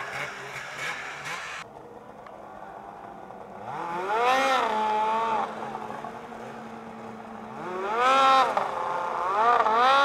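Snowmobile engine revved in short throttle bursts, each rising and falling in pitch, about three times, with a steady idle between them, as the rider works a tipped sled on a steep powder slope.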